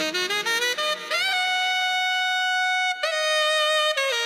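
Background music: a solo wind instrument plays a quick rising run of notes, then holds one long note for nearly two seconds before stepping to another.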